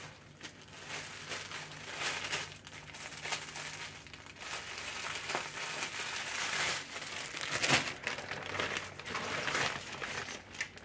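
Plastic packaging crinkling and rustling in uneven bursts as folded fabric items are pushed back into their bags and handled.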